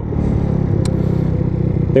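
Motorcycle engine running at steady low revs while the bike rolls toward a stop, heard from the rider's helmet camera. A short sharp click a little under a second in.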